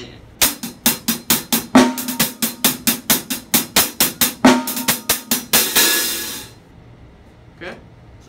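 Hi-hat played with drumsticks in a fast, even run of single strokes: a double paradiddle (right, left, right, left, right, right) followed by straight alternating sticking with two 32nd notes thrown in. Two strokes land heavier, and the run ends in a longer ringing wash.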